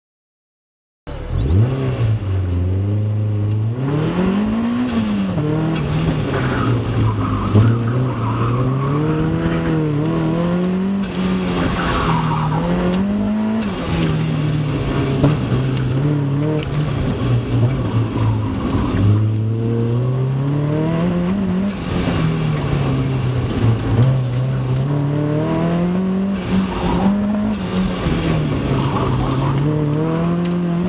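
Mazda Miata's four-cylinder engine, heard from inside the open car, starting about a second in. It revs up and falls back over and over as the driver accelerates and lifts between cones on an autocross run, with tires squealing at times in the corners.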